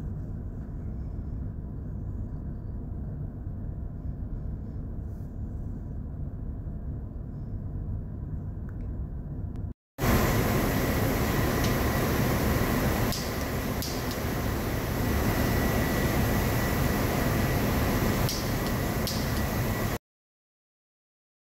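Steady mechanical hum and rumble of running machinery. It drops out briefly about halfway, then returns louder, with a thin steady whine and a few faint clicks.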